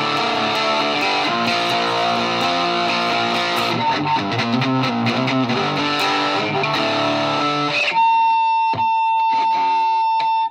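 Homemade cigar box guitar picked and strummed through its rod piezo pickup into a small amplifier. The playing stops about eight seconds in, and a single steady high tone holds for about two seconds before it is cut off.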